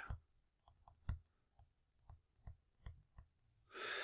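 Faint, irregular clicks and taps of a stylus on a drawing tablet while handwriting a couple of words, about ten clicks over a few seconds.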